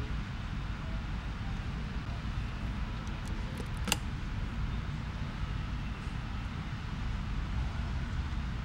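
Steady low rumble with a hiss above it, and a single sharp click about four seconds in.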